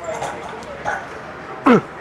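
A man's short, strained vocal grunts during a heavy barbell incline bench press rep, the loudest a brief grunt falling sharply in pitch near the end.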